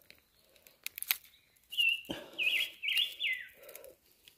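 A bird calling: a run of short, quick chirping notes that slide in pitch, starting a little under halfway in. It is preceded by a few sharp clicks, with soft rustling beneath.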